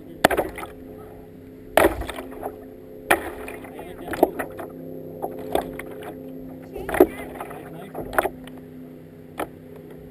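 Kayak paddle strokes splashing into the water, a sharp splash roughly every second or so, over a steady low hum.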